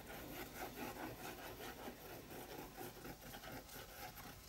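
The tip of a glue bottle rubbing back and forth over paper, spreading a layer of glue in faint, quick repeated scratchy strokes.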